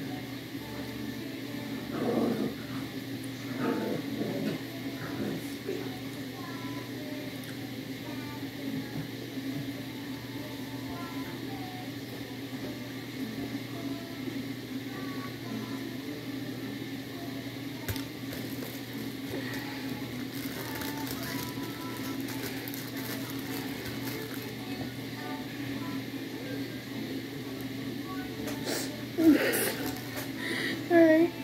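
Steady low hum of a small room, with a few soft knocks about two and four seconds in and faint background talk or music.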